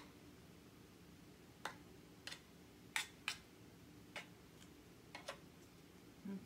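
A spoon clicking against a metal muffin tray as paint is stirred into shaving cream in its cups: about nine short, sharp ticks at irregular intervals, the loudest pair about three seconds in, over a quiet room.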